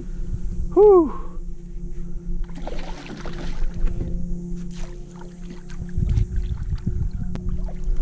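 Background music with steady held notes, over water splashing and sharp clicks as a hooked redfish thrashes at the surface and is netted beside a kayak. A short falling cry from the angler comes about a second in.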